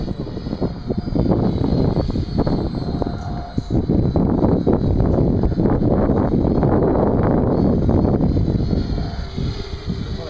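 Wind buffeting the microphone in gusts, with a faint steady whine from a quadrotor's electric motors and propellers hovering high overhead.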